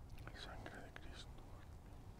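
A priest faintly whispering a few words during about the first second, over a low steady rumble.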